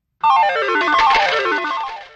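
A short musical sound effect: starting about a quarter second in, two quick runs of notes that each step down in pitch, one after the other.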